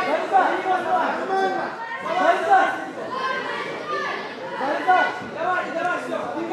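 Several voices talking and calling out over one another across a large hall: onlookers' chatter during a wrestling bout, with no single clear speaker.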